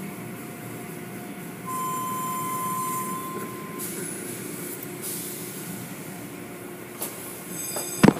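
Car wash machinery running with a steady rushing noise, and a high steady squeal for about two seconds near the start. A couple of sharp clicks come near the end.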